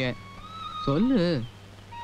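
A single short vocal sound about a second in, a drawn-out voiced syllable that rises and then falls in pitch, over a steady low hum in the old film soundtrack.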